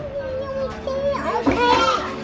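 Young girls' voices making wordless, high-pitched cooing sounds at a cat.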